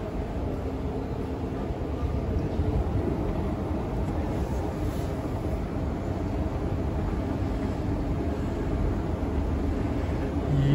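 Steady low rumble and hum of railway-station background noise, growing slightly louder toward the end.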